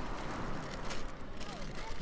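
Steady outdoor noise of sea surf and wind, with a faint click about a second in.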